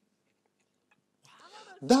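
Near silence for over a second, then a man's soft intake of breath and mouth sounds, and his voice begins near the end.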